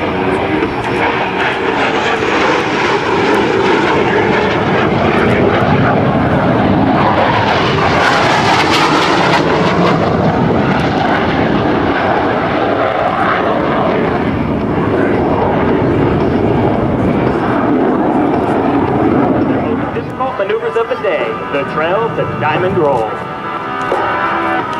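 F-16 Fighting Falcon jet engine noise as a fighter flies past low. The roar swells to its loudest and sharpest about 8 to 10 seconds in, then fades away after about 20 seconds.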